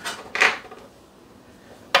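Metal drip tray parts of an espresso machine clattering as they are handled: two short clinks in the first half second, then quiet.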